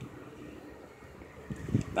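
Faint steady background noise outdoors, with a couple of soft low knocks near the end.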